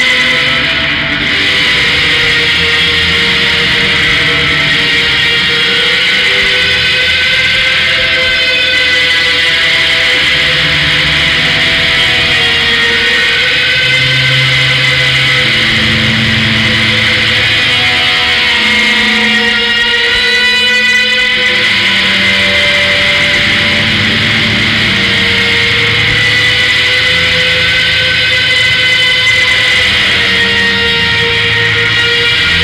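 Loud, dense noise rock: layered distorted electric guitar and bass drones, with long held high tones over slowly shifting low notes.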